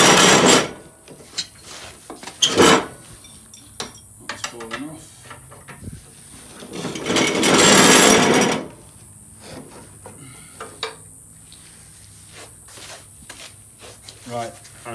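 John Deere riding mower's steel cutting deck scraping across a concrete floor as it is pushed in under the tractor: two long scrapes, one at the start and one about seven seconds in, with scattered knocks of metal parts between.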